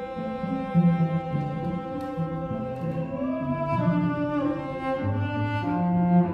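Cellos playing classical music: lower parts move beneath a long held high note that slides up and back down about halfway through.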